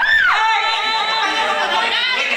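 A woman's high shout at the very start, its pitch rising then falling, over a roomful of people chattering and laughing.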